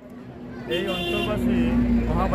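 Outdoor background of people's voices over a low, steady rumble. The level rises through the first second.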